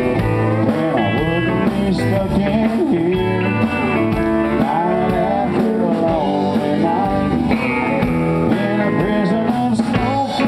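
Live country band playing, with electric and acoustic guitars over a steady beat.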